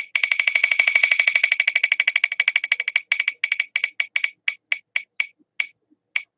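Wheel of Names spinning-wheel tick sound played from a phone's speaker: a rapid run of sharp, pitched ticks, over ten a second at first, slowing steadily to about two or three a second as the wheel winds down.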